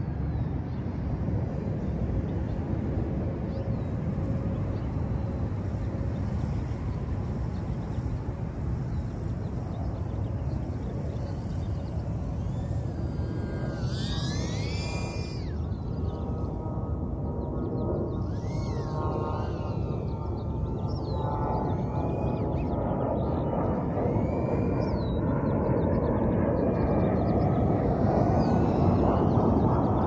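Tiny brushless motors of a micro FPV quadcopter whining, in several bursts from about halfway through, the pitch sweeping up and down with throttle. Underneath runs a steady rushing noise that grows louder near the end.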